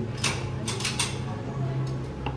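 Metal clicks and scrapes from an HK MP5 housing push pin being worked into the receiver during reassembly: a quick cluster in the first second and one more click near the end, over a steady low hum.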